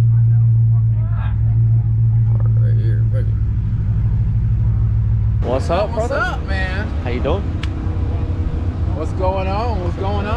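A car's engine running at low speed, heard inside the cabin as a steady deep drone. About halfway through it gives way to people's voices over a low engine rumble in the open air.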